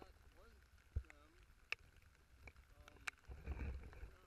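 Kayak paddling in the rain: paddle and water sounds with a swell of low rumbling near the end, a knock about a second in, and scattered sharp ticks of raindrops hitting the camera. A few faint voice-like calls sound in the first second and a half.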